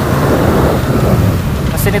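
Wind buffeting the microphone of a riding camera on a BMW R 1200 GS Adventure, with the bike's boxer-twin engine running steadily underneath.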